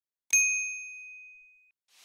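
A single bright 'ding' sound effect, the notification-bell chime of an animated subscribe button: one clear high tone struck once and ringing away over about a second and a half. Near the end a soft whoosh begins to rise.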